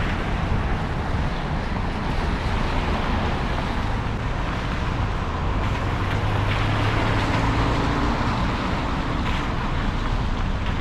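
A car driving slowly across a wet parking lot, giving steady road and engine noise with a low engine hum that grows stronger partway through and eases off near the end.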